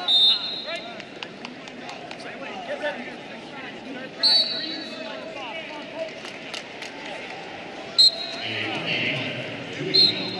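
Wrestling arena ambience: distant voices and shouts with scattered knocks, cut by short, loud referee whistle blasts at the start, about four seconds in and about eight seconds in.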